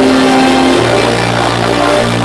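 Loud electronic dance music from a DJ set played over a club sound system: held synth chords, with a deep bass note coming in a little under a second in.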